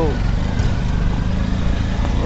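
Steady low rumble of a moving road vehicle with wind buffeting the microphone, loud throughout.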